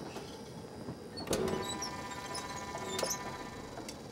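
A steel cup clanks against a metal water container about a second in and rings briefly, then a sharp click of metal follows near three seconds.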